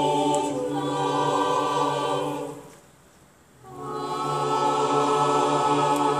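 An operetta chorus singing long held chords in harmony with a pit orchestra. The first chord breaks off about two and a half seconds in, and after about a second's pause a second long chord is held.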